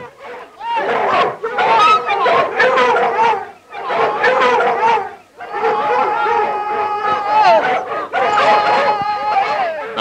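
A pack of foxhounds in full cry, many hounds baying and howling together on the line of a fox, with two brief lulls about a third and half way through. A long steady note stands out among the voices around two-thirds of the way in.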